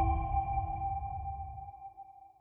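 The dying tail of a cinematic logo-reveal sound effect: several steady ringing tones over a low rumble, fading away. The rumble dies out near the end while the ringing trails on.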